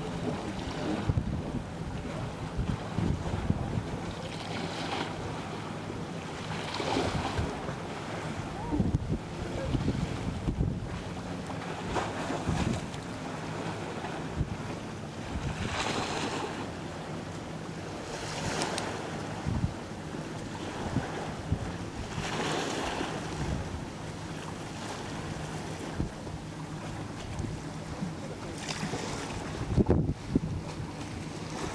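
Wind buffeting the microphone over small ocean waves, with swells of washing hiss every few seconds. Underneath runs a steady low boat-engine hum.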